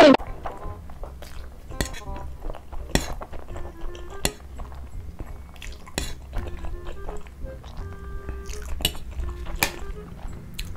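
Metal fork clinking and scraping against a serving platter while noodles are dug out and eaten, as a series of sharp separate clicks.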